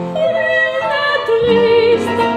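A woman singing a French chanson in a classically trained voice with vibrato, accompanied by piano and double bass. Her line steps down to a long held note in the second half.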